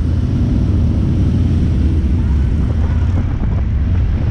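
Harley-Davidson touring motorcycles' V-twin engines running steadily at low speed, a loud, low, even engine sound close to the rider's own bike.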